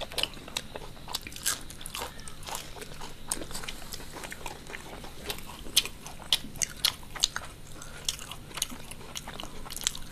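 Crunching and chewing of crisp deep-fried snacks: a run of sharp, irregularly spaced crunches with softer chewing between them.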